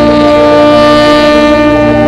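Tenor saxophone holding one long, steady melody note over a recorded accompaniment. The note ends near the end.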